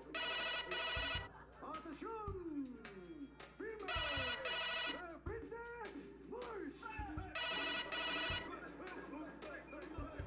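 A telephone ringing three times, each ring about a second long with about three and a half seconds between them. Background music with gliding notes plays between the rings.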